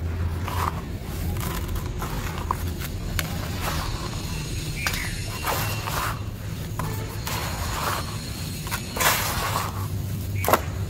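Hands digging and scooping in a tub of dry sand-cement mix: gritty rustling and crunching in repeated strokes, the longest about nine seconds in, over a steady low hum.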